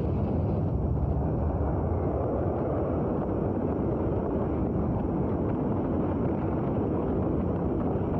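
Documentary sound effect of a nuclear blast wave: a loud, steady wind-like rush of noise, heaviest in the low range.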